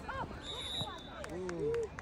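A few voices shout and call out across a football field, overlapping, one with a long falling call near the end. A short steady whistle blast sounds about half a second in.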